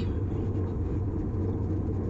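Steady wind rush and buffeting on a bicycle-mounted action camera's microphone as the bike rides at about 29 mph, a constant low rumble without any distinct events.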